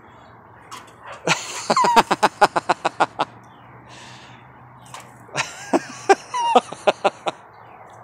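Two bouts of rapid laughter, each a string of quick pulses lasting about two seconds: the first starts just over a second in, the second a little after five seconds.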